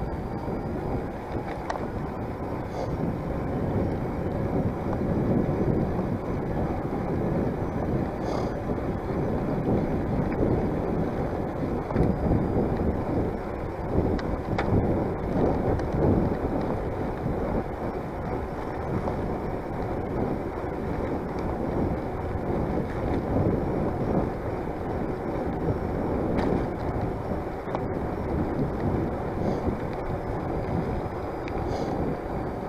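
Wind buffeting the camera microphone of a moving bicycle, a steady gusting rush, with the rumble of the tyres on a cracked asphalt path and a few faint knocks.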